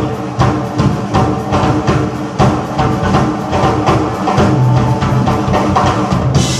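Live band music with the drum kit to the fore: rapid, steady drum and cymbal hits over sustained instrument notes.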